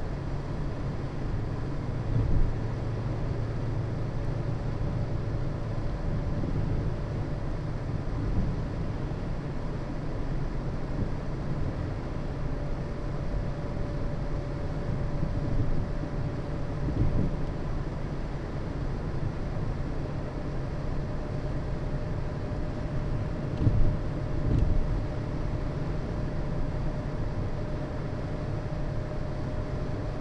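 Car cabin noise while driving: a steady low rumble of engine and tyres on the road, with a faint steady whine above it. A few brief bumps stand out, the loudest a pair about 24 seconds in.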